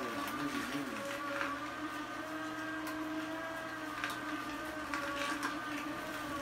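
A vertical slow juicer's motor running steadily while juicing carrots, a steady hum with a few faint clicks.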